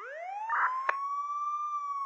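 A siren wail that starts suddenly out of silence, sweeps quickly up in pitch and then holds, slowly sagging. A short burst of hiss and a sharp click come about a second in.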